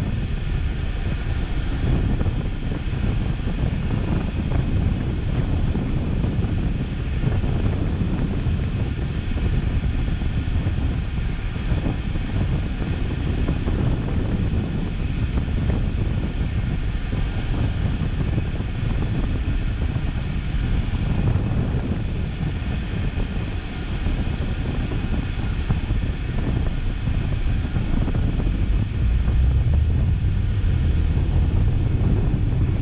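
Steady low rumble of a car idling at a traffic light while cross traffic passes, with wind noise on the microphone. The rumble grows a little louder near the end as the car pulls away.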